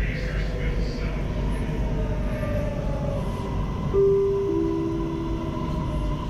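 An MRT Blue Line train rumbling as it runs into a station, with a steady thin whine. About four seconds in, a two-note falling chime sounds in the car.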